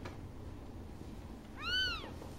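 A newborn kitten gives one short, high-pitched cry near the end, rising and then falling in pitch.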